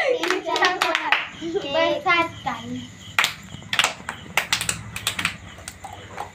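Children clapping their hands and calling out. Their voices fill the first half, with a fast wavering run of sound about two seconds in, then a handful of single sharp hand claps.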